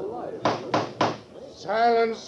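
A judge's gavel rapping three times in quick succession, sharp knocks about a third of a second apart, calling the courtroom to order. A man's voice starts calling for silence near the end.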